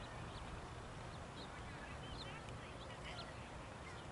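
Birds chirping faintly, short high calls scattered through, over a steady outdoor background noise with a low rumble.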